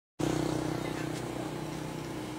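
A small motorbike engine running steadily at an even, low pitch.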